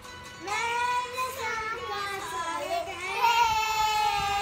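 A child singing in a high voice: a phrase of sustained, gliding notes beginning about half a second in, then a long held note from about three seconds in.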